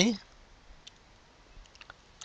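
Faint clicks of a pen stylus tapping on a tablet while handwriting, one about a second in and several close together near the end.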